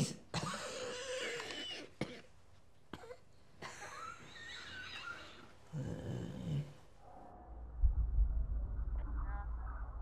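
A person coughing and wheezing in short broken bouts, then a steady low rumble that sets in near the end.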